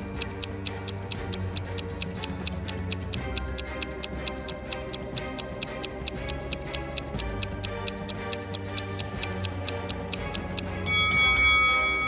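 Countdown clock ticking steadily over light background music while the timer runs down; a bright chime comes in near the end as the time runs out.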